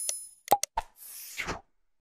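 Subscribe-button animation sound effects: a short high bell ding, then three quick pops, then a brief whoosh that ends about a second and a half in.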